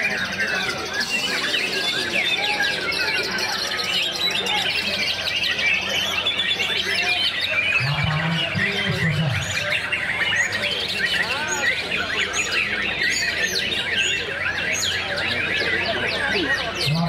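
Dense chorus of many caged songbirds, white-rumped shamas (murai batu) among them, singing and chirping over each other without a break. A low voice breaks in briefly about halfway through.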